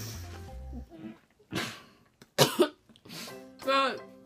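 Background music, then a couple of sharp, muffled coughs about halfway through from someone with a mouthful of marshmallows.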